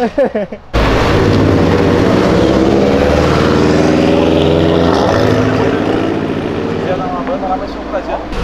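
Porsche Boxster convertible pulling away, its engine loud and steady. The sound comes in suddenly about a second in and eases off near the end as the car moves off.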